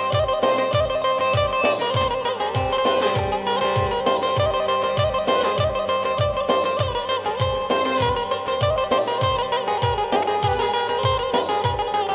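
Instrumental dance music from a wedding band, loud and continuous: a steady drum beat under a sustained melody played on a plucked-string or keyboard instrument, for line dancing.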